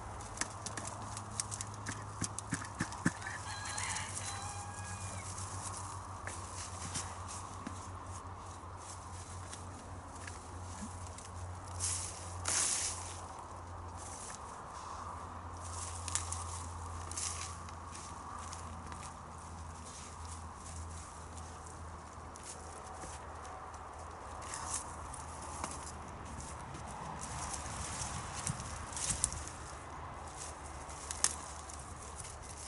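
Rustling, snapping and crackling of spent annual flower stems and foliage being pulled up and broken by hand, in irregular bursts with one louder rustle about twelve seconds in. A steady low hum runs underneath.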